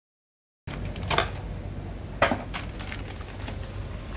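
Hands unpacking a new motorcycle battery, with scissors cutting its plastic bag: a few sharp clicks and handling noises, the two loudest about a second apart, over a steady low hum. The first half second is silent.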